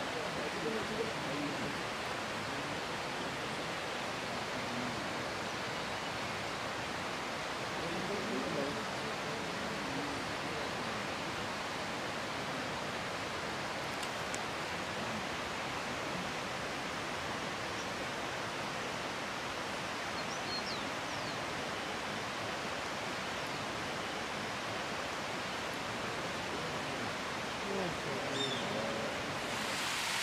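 Steady, even hiss of outdoor forest ambience throughout, with faint low voices murmuring a few times and a few faint high chirps about two-thirds of the way through.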